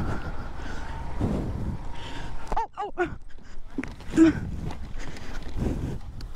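Suzuki Van Van 125 motorcycle's single-cylinder engine running as the bike slides on a slippery muddy lane and goes down on its side into the undergrowth. The rider gives short cries about two and a half seconds in and again near the middle, with brush and knocks from the fall.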